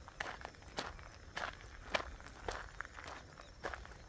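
Footsteps of a person walking on a dirt road at an even pace, about three steps every two seconds.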